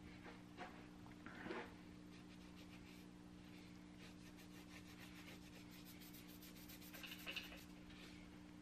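Faint rubbing of a cloth shop rag wiping the metal at the camshaft end of a cylinder head, in repeated short strokes, with a steady low hum underneath.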